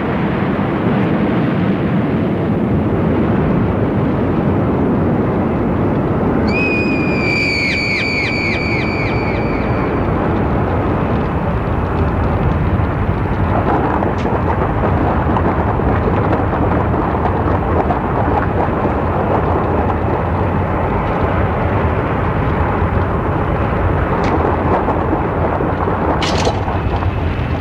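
Loud, continuous rumbling roar of a cartoon nuclear-explosion sound effect. A brief high warbling tone rises over it about six seconds in and fades out a few seconds later.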